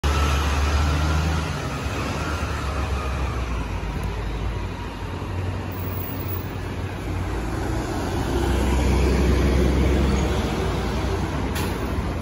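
Mercedes-Benz O530 Citaro diesel bus idling at a stop: a steady low drone that swells louder twice, in the first second or so and again about eight seconds in, over background road traffic.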